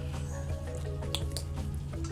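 A ladle worked over a wok: liquid dripping, with two or three short sharp clicks a little over a second in, over background music.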